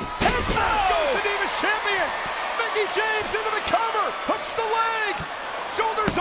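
A wrestler slams onto the ring mat with a sharp thud about a quarter second in, followed by an arena crowd shouting and yelling over the pinfall. Near the end the referee's hand slaps the mat for the count.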